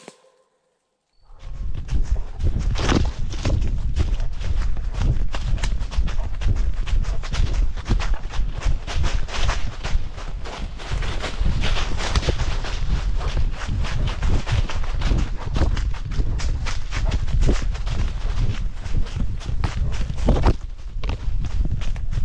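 A blood-trailing dog moving quickly through dry leaf litter, heard from a camera on its collar: dense rustling and quick footfalls with heavy bumping rumble from the camera jostling on the collar. It starts about a second in, after a brief silence.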